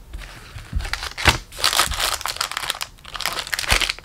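Foil-wrapped Magic: The Gathering Jumpstart booster packs crinkling as hands handle and stack them: irregular rustling with a couple of sharper knocks.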